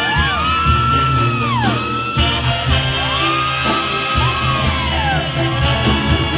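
A Sinaloan banda brass band playing live, with trombones and a steady low brass bass. Several long whoops rise and fall in pitch over the band.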